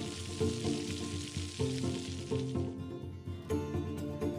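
Egg batter sizzling as it fries into a thin egg sheet in a pan, under background music. The sizzling stops a little under three seconds in, leaving the music.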